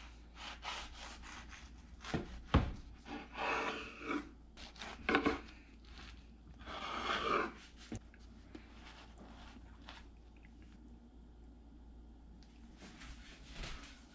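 Kitchen knife sawing back and forth through soft sandwich buns and breaded fish fillets on a wooden cutting board, in a run of rasping strokes with one sharp knock of the blade on the board. The strokes die away about eight seconds in, and a little clatter follows near the end.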